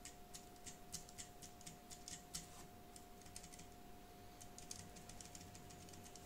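Scissor-switch keys of a Perixx Peripad-202 numeric keypad tapped in quick runs of soft clicks, with a short pause around the middle and a fast flurry of presses in the second half.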